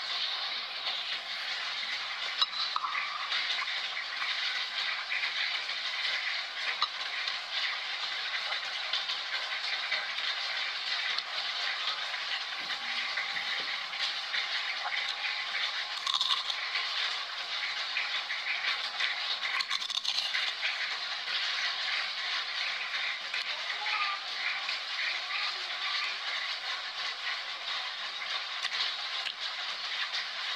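Steady rain falling, a continuous hiss with fine patter.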